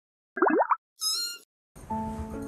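Edited-in cartoon sound effects: a quick pitch-dropping 'plop', then a short high twinkling chime about a second in. Background music starts near the end.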